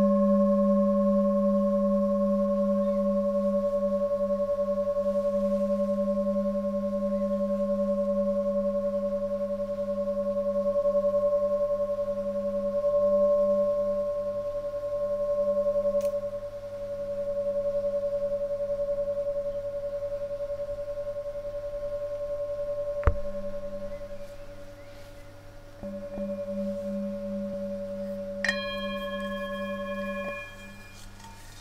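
Five-metal singing bowl, 17.5 cm across, ringing with a low tone near G (about 189 Hz) and clear higher overtones, the low tone pulsing as it swells and fades. About two-thirds of the way through there is a sharp knock and the ring dies down, then the tone builds again. Near the end a fresh strike brings out bright higher overtones.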